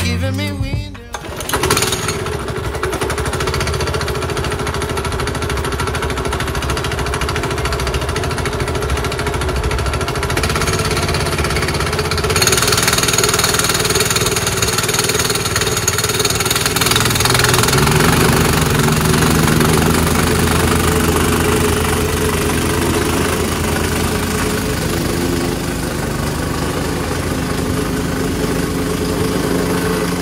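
A small petrol plate compactor running steadily as it vibrates over loose crushed hardcore, a continuous engine drone with rattle that grows somewhat louder about twelve seconds in. Background music is heard for the first second or so.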